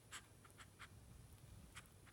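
Near silence with a few faint, soft clicks and scratches from a gray squirrel licking and nibbling at its paws and face as it grooms.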